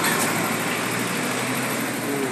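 A steady, even engine hum under broad outdoor background noise.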